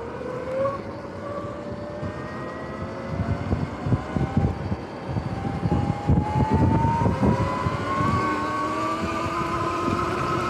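Sur-Ron X electric dirt bike's motor whining as it accelerates, the whine rising steadily in pitch with speed. Gusty wind rumbles on the microphone through the middle of the run.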